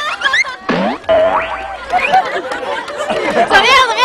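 People's voices: exclamations and laughter, with a short spoken question near the end.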